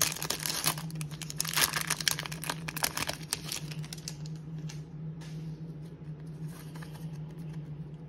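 A trading card pack wrapper being torn open and crinkled, with dense crackling for about the first three seconds, then softer rustling as the cards are slid out and handled. A steady low hum runs underneath.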